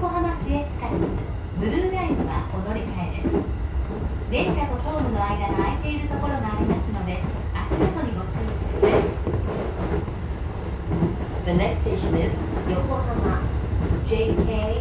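Commuter electric train running, heard from the driver's cab: a steady low rumble of wheels on rail, with a couple of sharp clicks past the middle.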